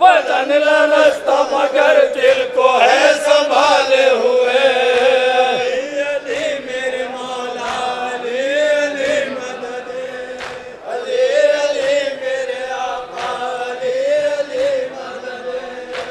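A group of men chanting a noha (Shia lament) together into a microphone, the melody drawn out on long held notes.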